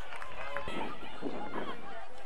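Several people's voices at once, overlapping talk and calls of spectators and players at an outdoor soccer match, with no single voice standing out.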